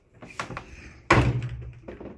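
A closet door being handled: a light click, then a sharp knock about a second in with a short low ring dying away after it, and another click near the end.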